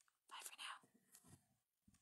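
Near silence: room tone, with a few faint breathy sounds about half a second and a second in.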